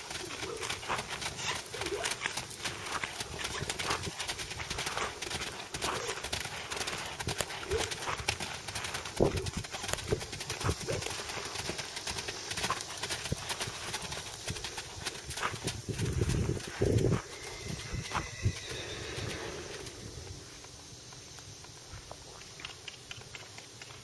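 Hooves of a Quarter Horse filly and a mare trotting on sand, a quick, uneven patter of hoofbeats, with a couple of louder low thumps about sixteen seconds in. The hoofbeats thin out around twenty seconds in as the horses slow and stop.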